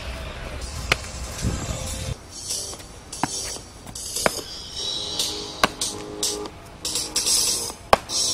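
Dance music accompanying krump dancing, with sharp hits at uneven spacing and hissing cymbal-like sounds. A low rumble in the first two seconds drops away.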